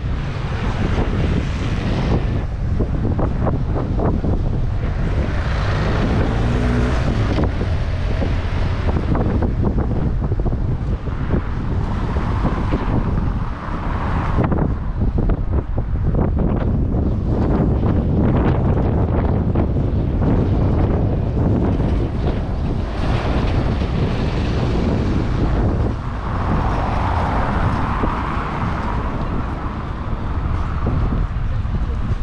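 Wind buffeting the body-worn GoPro Hero8's microphone, a heavy low rumble throughout, with passing road traffic swelling in and out several times.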